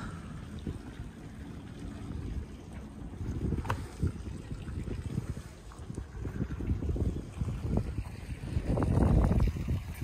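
Wind buffeting the microphone: an uneven low rumble that rises and falls, swelling near the end, with a single sharp tick about four seconds in.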